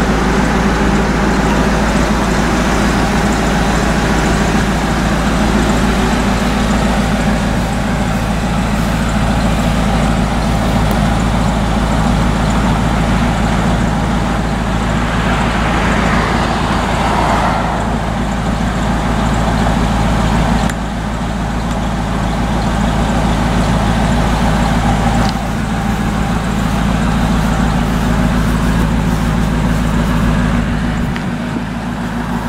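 2002 Ford SVT Lightning's supercharged 5.4-litre V8 idling steadily, with a brief rush of noise about halfway through.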